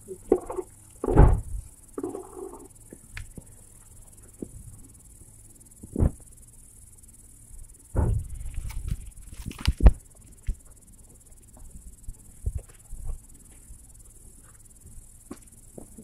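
Crickets chirping steadily, with scattered thumps and rustles from a hand playing with a cat on the ground, loudest about eight to ten seconds in.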